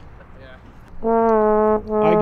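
A trombone plays a loud held note starting about a second in, breaks off briefly, and starts a second note near the end.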